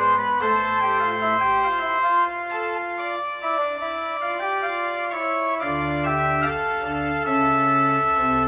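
Church organ playing slow, sustained chords. The deep bass notes drop out about a second and a half in and come back in near the six-second mark.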